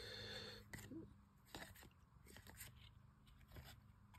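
Very faint handling of a stack of paper trading cards: a soft rustle at the start, then a few scattered light clicks as cards are slid and flipped by hand.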